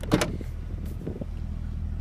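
Trunk lid of a Cadillac CTS-V coupe unlatching: one sharp click just after the start, then a few faint knocks, over a steady low rumble.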